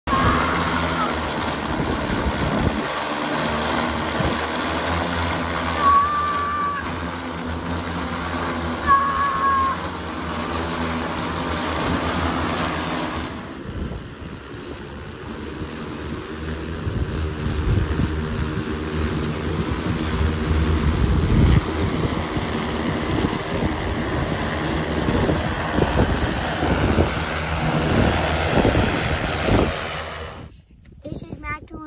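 Large multirotor drone's propellers running in a steady, loud hum of several pitches, carrying the weight of a child hanging from its frame. The sound drops and changes character about halfway through.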